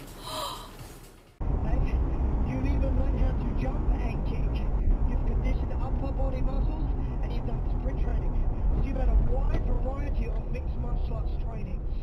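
A brief gasp, then an abrupt cut to the steady low rumble of road and engine noise inside a moving car, with voices talking indistinctly over it.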